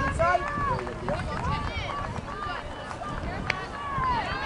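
Several voices of spectators and players talking and calling out at once, over a low wind rumble on the microphone. A single sharp knock comes about three and a half seconds in.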